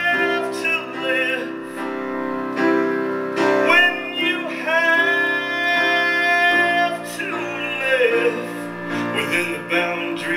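Live song: a man sings long, drawn-out notes over piano accompaniment.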